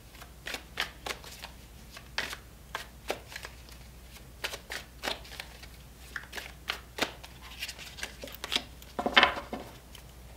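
Tarot deck being shuffled by hand: an irregular string of quick card snaps and slaps, with a louder clatter near the end.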